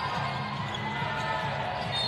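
Basketball arena ambience during live play: a steady crowd hum and court noise, with music playing underneath.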